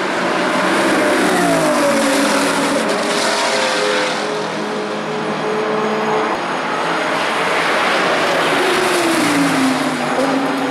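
Race car engines running at speed as cars go past on the track. The engine pitch falls away twice, about a second and a half in and again near the end.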